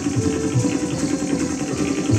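Live Kathak accompaniment: rapid, even tabla strokes over a held melodic note.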